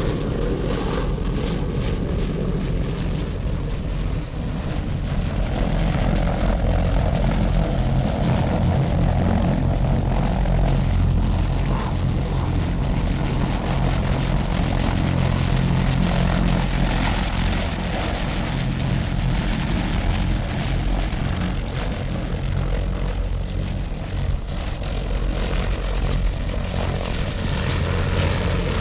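Loud, steady engine drone with a deep, even hum underneath and a rushing noise on top, swelling slightly at times.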